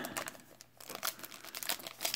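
Foil trading-card pack wrapper crinkling in the fingers as it is worked open at the top edge, in faint scattered crackles that thin out about a third of the way in and pick up again.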